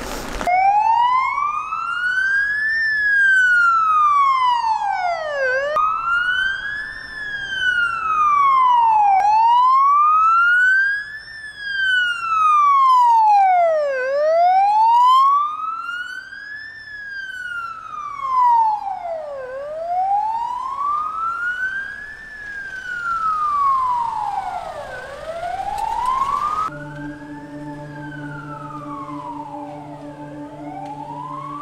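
Vehicle siren sounding a slow wail, its pitch rising and falling about once every five seconds. Near the end it drops in level and a steady low drone comes in beneath it.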